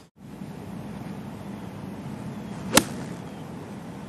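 A golf club striking the ball on a fairway approach shot: one sharp click about three seconds in, over steady outdoor background noise.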